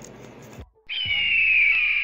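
An editing sound effect: a whistle-like tone gliding slowly downward over a hiss, starting about a second in and held for about a second and a half.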